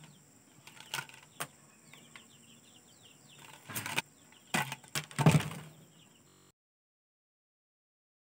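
Handling sounds of a green plastic-mesh fish trap (bubu) with a plastic bottle inside as it is turned in the hands: a few short knocks and rustles, the loudest about five seconds in. Faint bird chirps come in between, and the sound cuts off suddenly after about six and a half seconds.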